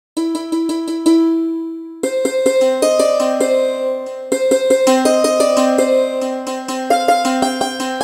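Sampled santoor from a software instrument playing a factory preset. It opens with a quick run of repeated strikes on one note and a louder note left ringing. From about two seconds in it plays a busy melodic phrase of hammered, ringing notes.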